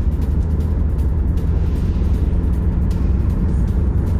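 Steady low rumble of a heavy truck's engine, under background music.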